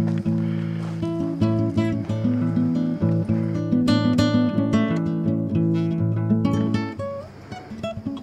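Background music: a plucked acoustic guitar playing a run of notes, growing quieter near the end.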